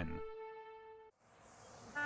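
Soft background music holding a chord that fades away, then after a moment of silence a soft hiss of wind swelling up, like wind through a wheat field.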